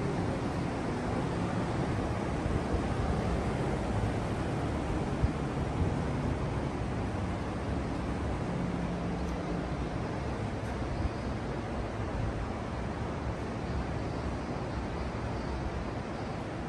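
Steady background noise of a large indoor hall, with a couple of faint knocks about five and eleven seconds in.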